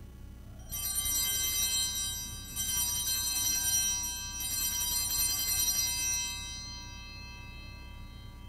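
Altar bells rung three times, each ringing about two seconds long with high, steady tones, the last dying away: the bells that mark the elevation of the consecrated host at Mass.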